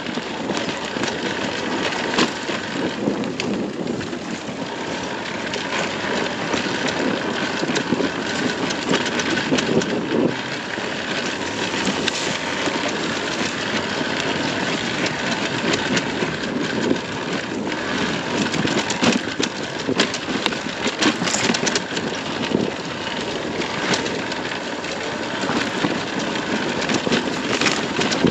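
Sherco 300 SE Factory's 300 cc two-stroke single running at low revs while the bike rolls down a rocky dirt track, with frequent sharp clicks and clatter from stones and the chassis.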